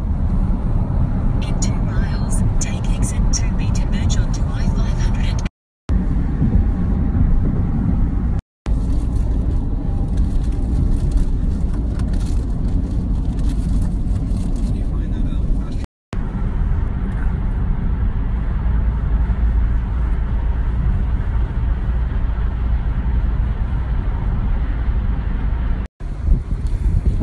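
Road and engine noise heard inside a moving car's cabin on a freeway: a steady low rumble that cuts out briefly three times.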